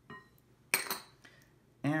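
Small glass dish knocking against glassware with a faint brief ringing clink, then a louder sharp glassy clink about three quarters of a second in as it is set down.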